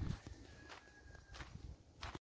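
Faint footsteps of a person walking, a few soft steps roughly every half second.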